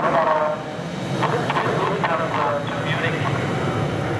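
Twin Williams FJ44 turbofans of a Cessna 525 CitationJet climbing away after takeoff: a steady low jet rumble, with people talking over it.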